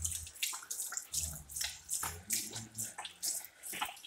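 Water from a sensor-activated tap running over a hand and splashing into a ceramic basin. The flow breaks up into uneven splashes as the hand moves under it.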